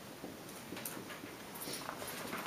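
Felt-tip marker writing on a whiteboard: a few short strokes as letters are drawn, the loudest about a second in and two more near the end.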